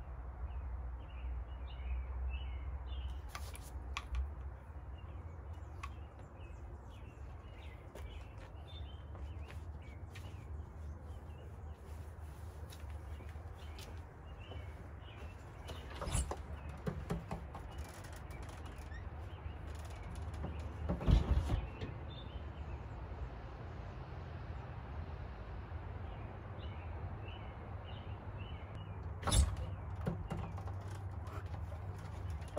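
Quiet outdoor ambience with small birds chirping faintly over a low steady rumble, broken by knocks from a house door: a latch click about halfway through, a louder thump a few seconds later, and another knock near the end.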